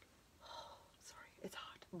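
Faint whispering from a woman, breathy and without voice, with a short voiced syllable near the end as she starts speaking again.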